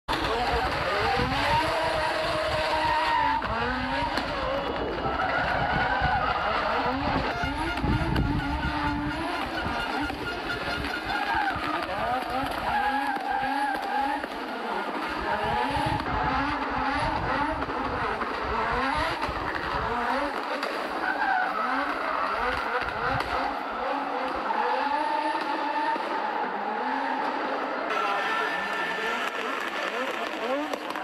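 Audi Sport Quattro rally car's turbocharged five-cylinder engine driven hard, its revs climbing and dropping again and again through gear changes as it passes.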